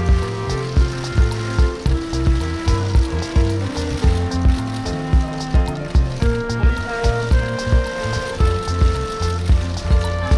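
Background music with a steady beat of about two thumps a second under sustained pitched notes that change every second or so.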